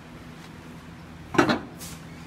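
A plastic bowl of noodles set down inside a microwave oven: one short clatter about one and a half seconds in, over a faint steady hum.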